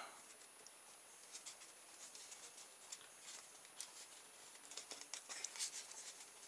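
Faint, scattered light clicks and scratches of hands handling a cardboard tube fitted with rubber bands and a pointed hand tool pushed through it as a peg, a few louder ones near the end.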